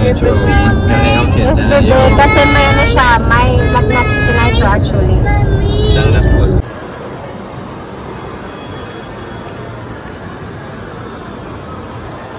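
Car cabin road noise at motorway speed, a heavy low rumble with high-pitched voices over it. About six and a half seconds in it cuts off suddenly to a much quieter, steady hum of indoor public-space background.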